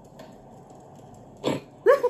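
A woman laughing: a sharp burst of breath about one and a half seconds in, then a rising, pitched laugh near the end.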